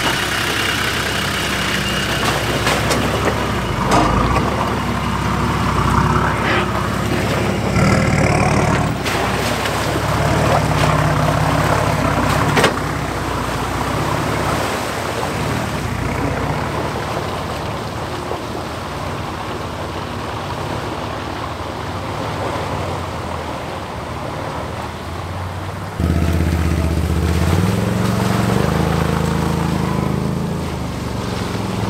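Off-road vehicle engines, a 4WD and quad bikes, running under load as they drive through a muddy boghole track, with a few sharp knocks in the first half. About 26 seconds in, a quad bike engine close by comes in suddenly louder and revs up, rising in pitch.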